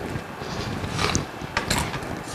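Hands kneading oily pizza dough in a stainless steel bowl: soft, irregular rubbing and a few light knocks of dough and hands against the metal.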